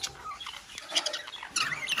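Budgerigars chirping, a few short high chirps about a second in and again near the end.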